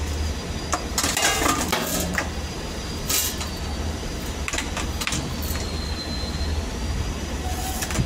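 Metal tools and stainless-steel parts clinking and clattering as they are handled during an ice machine repair, in several short irregular bursts over a steady low hum.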